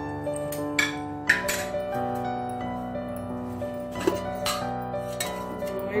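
Background music with held notes, over which steel cookware clinks sharply about half a dozen times. The loudest clink comes a little over a second in.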